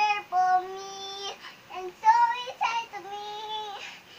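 A young girl singing a melody alone in long held notes, with brief gaps between them.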